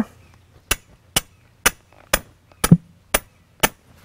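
A hammer driving a thin metal stake into the ground: seven sharp, even blows, about two a second.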